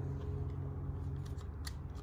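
Two sharp, brief clicks near the end as an airsoft Glock 19 pistol is handled, over a steady low hum.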